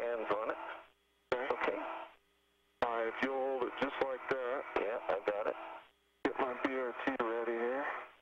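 Radio voice transmissions, thin and cut off at the top, in four short bursts that switch on and off abruptly, with a faint steady tone in the gaps between them.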